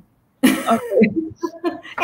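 Women's voices on a video call: a brief dead silence, then a woman says "okay" and laughs in short bursts.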